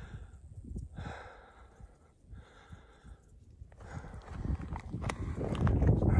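A hiker's heavy breathing, three long breaths out of breath from climbing uphill in the heat, followed about four seconds in by footsteps crunching on a loose rocky trail, growing louder.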